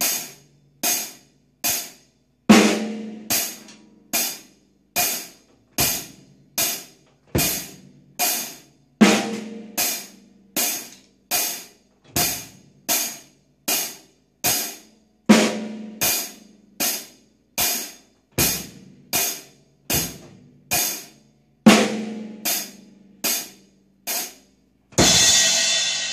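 Drum kit played as an alternate-hands sixteenth-note groove: a steady run of evenly spaced hi-hat and snare strokes, with a heavier drum accent about every six seconds. A cymbal crash rings out near the end.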